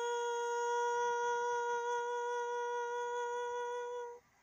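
A woman's voice holding one long, steady note to close an unaccompanied song, stopping sharply at the end.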